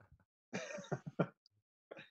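A man briefly clearing his throat in two or three quick throaty pulses, about half a second in, with a faint click near the end.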